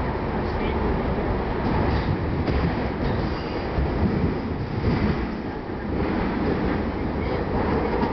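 Budd-built PATCO rapid-transit train running through a subway tunnel: a steady rumble of wheels on rail and running gear, heard from inside the car.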